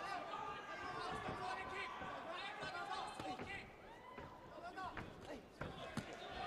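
Untranscribed voices around a kickboxing ring, with scattered thuds of strikes and footwork on the canvas. Near the end a sharp smack as a high roundhouse kick lands on a raised guard.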